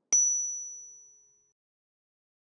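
A single high-pitched bell-like ding sound effect, struck once and ringing out, fading away over about a second and a half.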